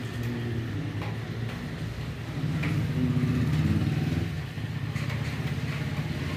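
A low engine rumble that swells about two and a half seconds in and eases off about two seconds later.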